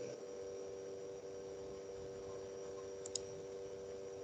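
Faint, steady electrical hum on the computer's microphone line, with one brief mouse click about three seconds in as the screen share of the slides is being fixed.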